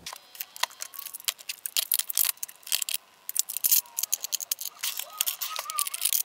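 Lipstick and gloss tubes clicking and clattering against clear acrylic organiser trays as they are picked up and set down in a drawer: many small rapid clicks and taps, with a few faint plastic squeaks.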